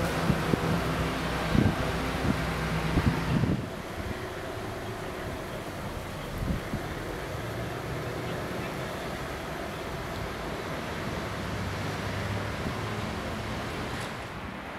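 Street ambience with a vehicle engine idling and wind on the microphone, with a few knocks in the first few seconds. After about three and a half seconds it drops to a quieter, steady outdoor rumble.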